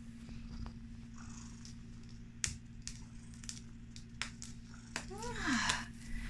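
Sphynx cat purring steadily while being stroked, with a few small clicks.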